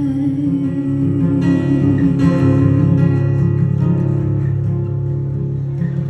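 Acoustic guitar playing a solo accompaniment, with a woman's sung note held steady over it for about the first half before the guitar carries on alone.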